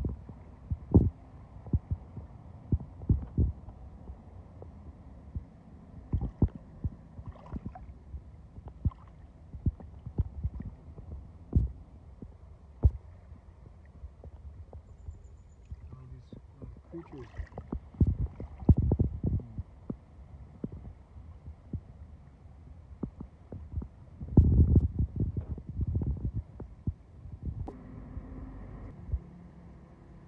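Wind buffeting the microphone in irregular low thumps and rumble, with a heavier stretch of buffeting near the end.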